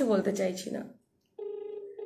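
A woman speaks briefly; after a short pause a telephone call tone sounds, one steady buzzy pitch lasting just over a second, as from a phone placing a call.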